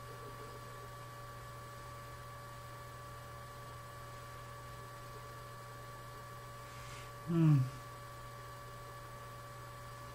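Steady electrical mains hum in the recording. About seven seconds in, a man's voice gives one short, low sound that falls in pitch.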